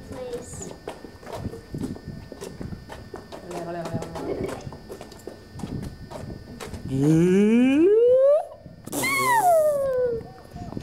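Voices over light footsteps on stone paving, then a long vocal glide rising in pitch about seven seconds in, followed about nine seconds in by a toddler's high excited squeal falling in pitch.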